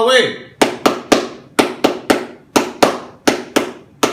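One person clapping his hands in the set rhythm of a scout clap chant (tepuk): sharp single claps in groups of three, three, two and two.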